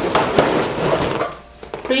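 Rubbing and light knocks of things being handled close to the microphone for over a second, then a short lull.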